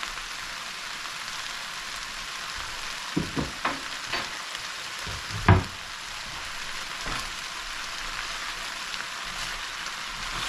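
Okra and saltfish sizzling steadily as they fry in an enamelled cast-iron pan. A few sharp knocks of a utensil come between about three and four seconds in, with a louder one at about five and a half seconds.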